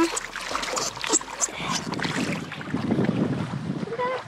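Knocks and water splashing around an inflatable paddleboard as a person climbs onto it, followed from about halfway by wind rumbling on the microphone.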